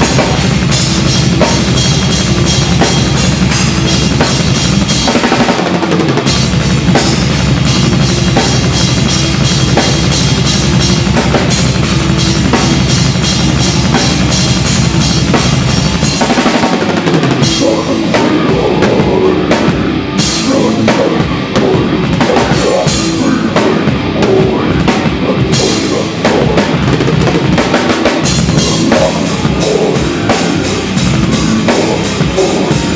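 A death metal drummer playing a full drum kit at speed, loud and close in the mix over the band: rapid bass-drum and snare strokes with cymbals over sustained low distorted notes. The pattern shifts about six seconds in and again about seventeen seconds in.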